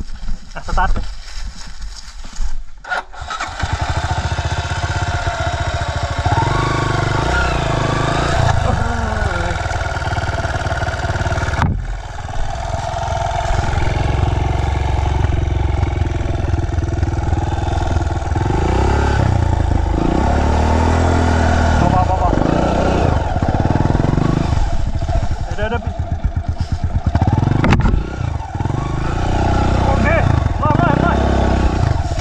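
Dirt bike engine firing up about three seconds in, then running and revving on and off, its pitch rising and falling as the bike is worked up a steep, narrow trail.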